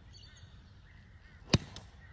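Sand wedge striking a golf ball off a practice mat on a smooth, reduced-length pitching swing: one sharp, crisp click about one and a half seconds in, followed by a much fainter tick.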